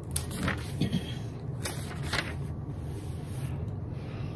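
Hymnal pages being turned and handled: a handful of short papery rustles in the first half, over a steady low hum.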